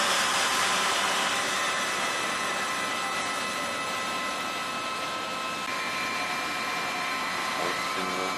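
Internal grinding spindle of an Okamoto IGM-15NC CNC internal grinder spinning at high speed, a steady hiss with several high whining tones. One of the tones drops out about two-thirds of the way through.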